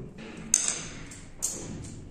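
Two sharp clicks, a little under a second apart, each with a brief ring, as a hand-held fretsaw frame and a small wooden piece knock against each other while being handled.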